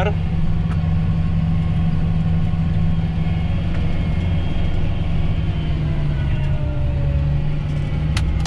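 A John Deere tractor's diesel engine running steadily under load while pulling a seed drill, heard from inside the cab as an even low drone with a faint thin whine above it.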